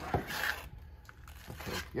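Brief handling noise of a metal pneumatic piston pump being turned over by hand: a sharp knock followed by a short scrape against cloth.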